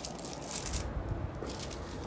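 Soft rustling of crinkled paper shred and cellophane packaging being handled in a cardboard box, with a dull low bump about a second in.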